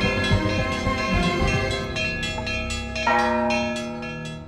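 Church bells ringing in a quick peal, small bells struck several times a second, with a heavier bell struck about three seconds in and the ringing then dying away.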